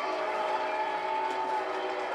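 Several steady horn-like tones held together as a chord for about a second and a half, over the noise of a stadium crowd.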